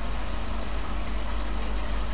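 Steady low hum under an even background hiss, with no distinct event.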